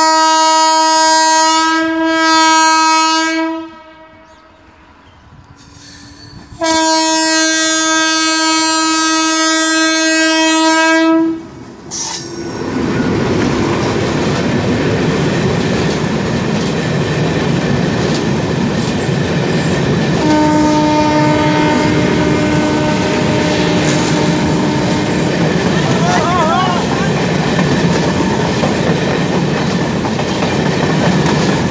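MEMU train's horn sounding two long blasts as it approaches. From about twelve seconds in, the train passes close by with a loud, steady rumble and wheel clatter over the rail joints, and a fainter third horn blast comes about twenty seconds in.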